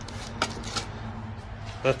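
Plastic wrapping on a metal mud-flap logo plate crinkling as it is handled, with two short sharp crackles about half a second in.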